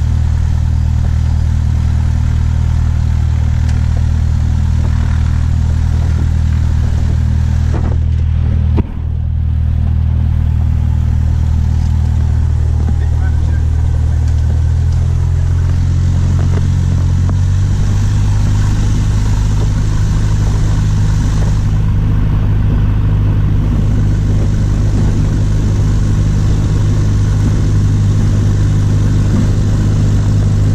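Piston engine and propeller of a high-wing single-engine light airplane, heard inside the cabin, running with a steady drone. There is a brief click and dip about nine seconds in. The engine speed rises in two steps a little past halfway.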